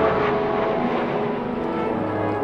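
Formation of military jets flying over, a broad rushing jet noise loudest at the start and fading away, with held brass notes underneath.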